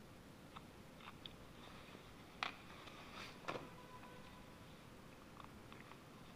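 Faint handling noises from hands working small carburettor parts and a cotton swab: a few sparse, soft clicks and scrapes, the two loudest about two and a half and three and a half seconds in.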